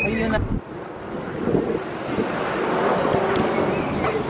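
Outdoor street ambience with wind buffeting the microphone and faint, indistinct voices. The sound changes abruptly about half a second in.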